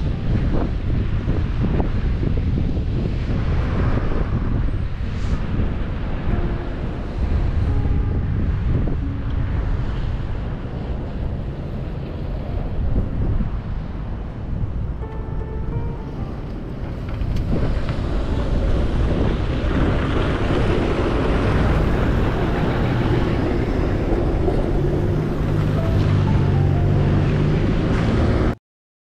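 Wind rushing over the microphone on top of street traffic: cars and a tram passing on a slushy, snow-covered road, with a low steady vehicle drone near the end.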